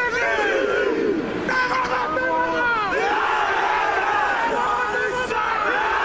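A rugby team's pre-match war dance: many men's voices shouting a chant together over a stadium crowd.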